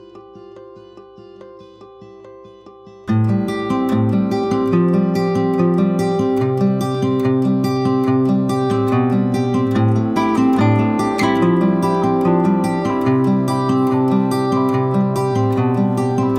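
Background music: a quiet plucked-string intro, then about three seconds in a much louder acoustic guitar accompaniment comes in and carries on steadily.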